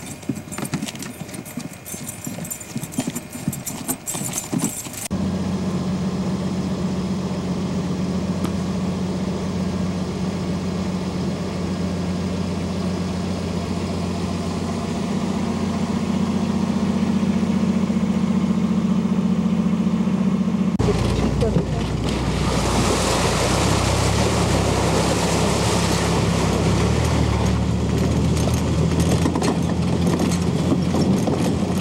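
Rustling and handling noise for about five seconds, then a vehicle engine running steadily at idle. About twenty seconds in it gets louder and rougher as the vehicle drives off across rough ground.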